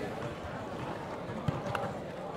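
Background chatter of a crowd and players around outdoor basketball courts, with a couple of faint thuds near the end.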